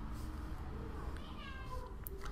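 A faint, high-pitched cry in the background, slightly falling in pitch, about a second and a half in, over a low steady hum.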